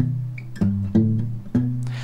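Acoustic guitar held on a B7 chord, with the thumb plucking four low bass notes about half a second apart, each left ringing.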